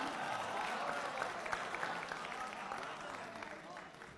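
Audience applauding, with scattered voices calling out; the applause dies away toward the end.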